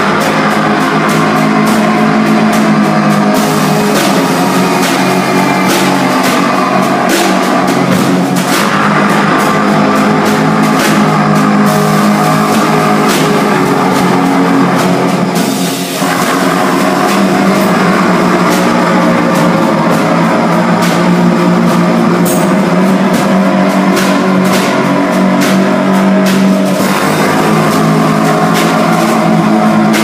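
Live band playing loud, dense rock-style music: trumpet over a drum kit with frequent sharp cymbal and drum hits, and electric guitar. The sound briefly dips about halfway through, then carries on.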